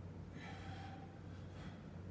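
A man breathing hard from the exertion of weighted dips, with two sharp breaths, about half a second in and about a second and a half in. A steady low hum runs underneath.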